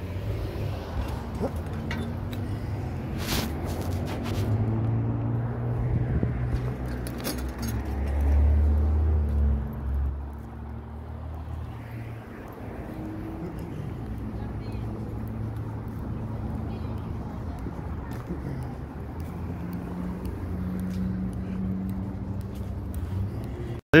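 Town street traffic: cars and pickup trucks driving past with a low engine rumble that swells loudest about a third of the way through as a vehicle goes by, then settles to a steady hum.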